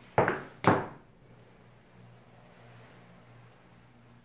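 Two sharp clacks about half a second apart, followed by a faint steady low hum.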